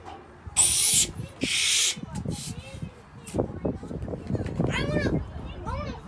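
Two hissing strokes of a hand balloon pump blow up a long latex twisting balloon. The balloon then squeaks and rubs as it is twisted into shape.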